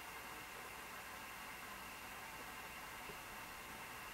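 Faint, steady hiss of room tone, with no distinct sounds.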